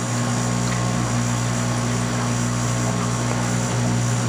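AquaClear 201 aquarium powerhead running with a steady electric hum, water rushing through a LifeGuard FB-300 fluidized bed reactor as its Purigen media fluidizes.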